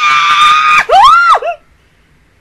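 A woman's high-pitched squeal, held for under a second, followed by a shorter squeal that rises and falls in pitch; it cuts off suddenly.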